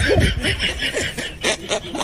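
Quick, rhythmic snickering laughter, a fast run of short bursts with a few brief vocal sounds mixed in.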